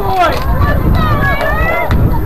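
Shouting voices, including one long call that rises in pitch in the second half, over a steady low rumble.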